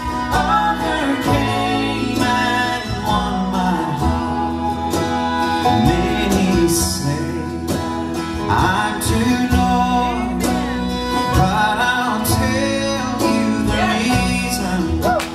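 Bluegrass gospel band playing live, with acoustic guitar, banjo and bass guitar holding a steady chord pattern under gliding melody lines.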